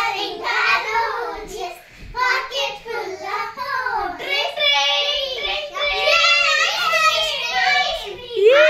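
Young girls singing together: a bright, pitched children's tune with held notes.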